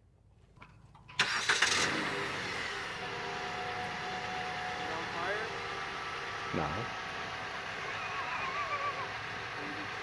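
A 2012 Jeep Compass's 2.4 L dual-VVT four-cylinder engine starting about a second in, then idling steadily. It is the first start on freshly fitted spark plugs, which went in to cure a hesitation on acceleration.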